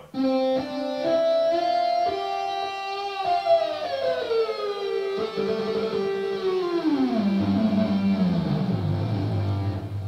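ROLI Seaboard playing a synth lead sound: a few held notes, then a long slide down in pitch over several seconds, made by sliding from the keys onto the ribbon, ending on a low held note.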